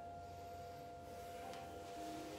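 Faint soft background music holding one steady high note, with a fainter note above it.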